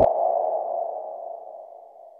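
Outro sound effect: a single ringing electronic tone, like a sonar ping, that starts suddenly and fades away steadily.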